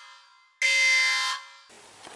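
Alarm horn sounding in loud, steady blasts of under a second each: one cuts off at the start, and another sounds from about half a second in until about a second and a half in.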